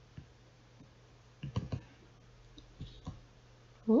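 A handful of computer mouse clicks: a few single ones and a quick cluster of three or four about a second and a half in, over a low steady hum.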